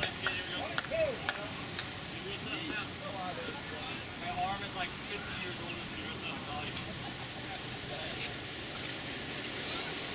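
Indistinct voices and chatter from players and spectators around a baseball field, over a steady hiss of outdoor noise. A few short sharp clicks come in the first two seconds.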